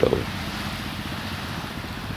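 Wind buffeting the camera's microphone outdoors: a steady, rough hiss with a low fluttering rumble underneath.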